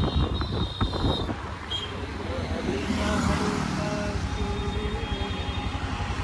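Motorbike ride heard from the rider's seat: the engine runs under a steady low road rumble while wind buffets the microphone, hardest in the first second. A faint wavering pitched sound joins in about halfway through.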